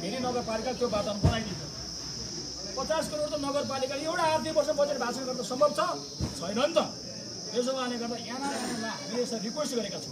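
A man speaking animatedly in Nepali to a gathered crowd, over a steady high-pitched hiss or drone that runs underneath throughout.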